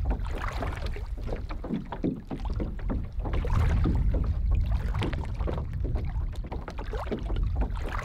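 Small waves lapping and splashing irregularly against the hull of a canoe resting in shallow water, over a low wind rumble on the microphone that swells for a second or two in the middle.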